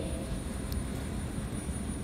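Steady low rumble of a large hall's background noise, with a faint high-pitched whine over it.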